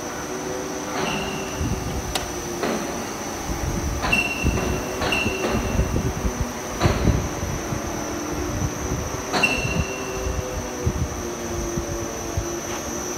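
Wire-rolling workshop machinery running, a steady high whine over a low hum. Sharp metal clanks, several of them ringing briefly, break in at irregular intervals.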